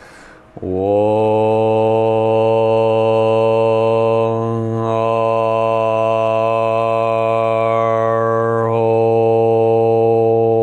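A man chanting aloud, holding one long low note at a steady pitch. The vowel shifts twice, about four seconds in and again about eight seconds in.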